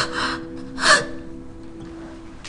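A woman's two sharp, tearful gasping breaths, the second about a second in and the louder, over soft background music with held notes.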